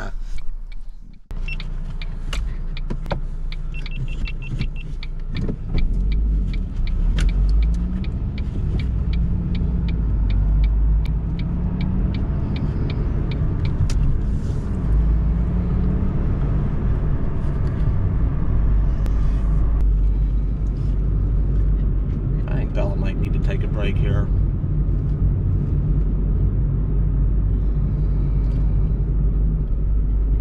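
Car engine and road rumble heard from inside the cabin while driving, the engine's pitch rising and falling as the car pulls away and picks up speed. A regular ticking runs through the first several seconds.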